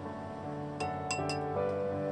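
Several light clinks of wooden chopsticks against a glass mixing bowl, coming quickly one after another about a second in, as greens are tossed. Background music with held notes plays underneath.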